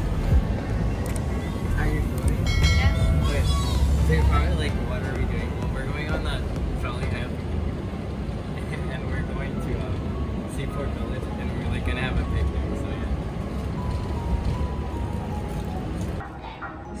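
Interior sound of a light-rail trolley car in motion: a steady deep rumble that swells a little around the fourth second, with indistinct voices and faint background music over it.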